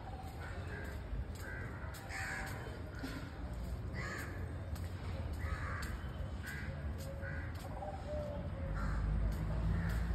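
Birds calling repeatedly: short harsh caw-like calls, about one a second. A low rumble underneath grows louder near the end.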